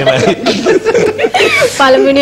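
A man chuckling and laughing, mixed with talk.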